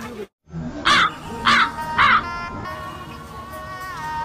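A crow cawing three times, loud and about half a second apart, starting about a second in, after a brief gap in the audio; a steady held tone follows.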